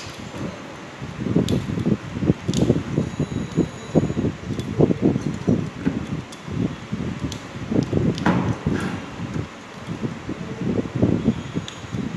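Enamelled copper winding wire being pushed by hand into the paper-insulated slots of an electric pump motor's stator: irregular rubbing and rustling with a few light clicks, as a coil side is seated in its slots.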